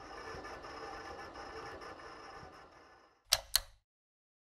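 Logo-intro sound effect: a busy textured rattle that fades out over about three seconds, then two sharp clicks in quick succession near the end.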